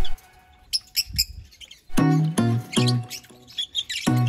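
Small birds chirping in short, high calls. Background music with a melody comes back in about halfway through and plays under the chirps.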